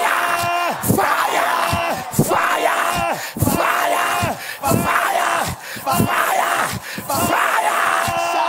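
Voices shouting "Fire!" over and over in a loud prayer declaration, about one shout a second, each falling in pitch.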